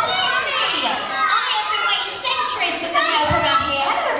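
Many children's voices calling out and chattering at once in a large hall.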